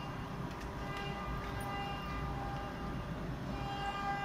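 Steady hum of workshop machinery: a low rumble with several faint, steady high whining tones above it.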